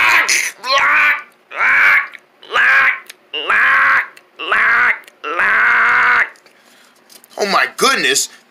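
A voice making a run of about six drawn-out, wordless vocal noises, each half a second to a second long and swooping in pitch. It is a reaction of disgust at drinking bad-tasting milk.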